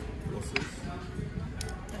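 Restaurant background: a steady low hum of room noise with faint talk and background music. There is one light click about half a second in and a few faint ticks near the end.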